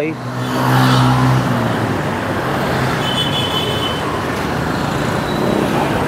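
A motor vehicle's engine hums as it passes close by during the first second or so and then fades. Steady street traffic noise follows.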